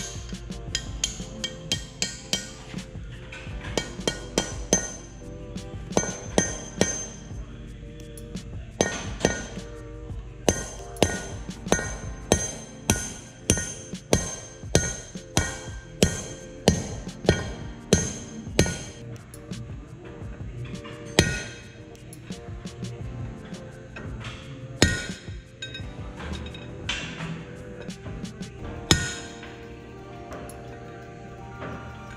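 Hammer blows on a steel drift set against the wheel bearing race inside a heavy-truck wheel hub, metal on metal with a ringing clang at each strike. The blows come in runs of about two a second, with short pauses between runs.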